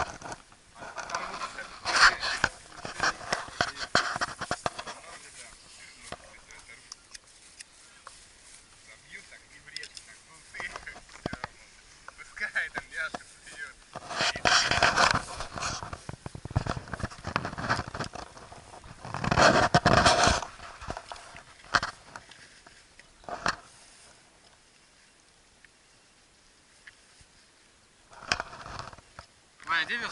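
Camping gear being handled and packed: rustling and scraping of a foam sleeping mat, a backpack and plastic bags, coming in irregular bursts with quiet stretches between.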